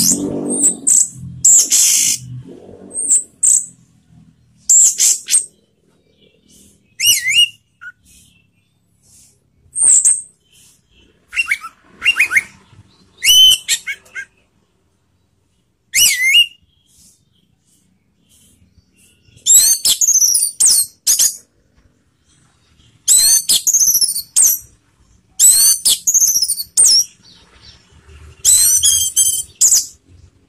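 Orange-headed thrush (anis merah) singing: bursts of high, varied whistled notes and gliding phrases separated by pauses, turning into quicker, denser runs of notes in the second half.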